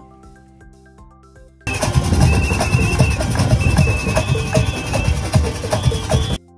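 Faint background music with held tones, then about two seconds in a live drum band comes in suddenly. It plays loud, fast drumming on large hand-held drums, with a warbling whistle over it at times.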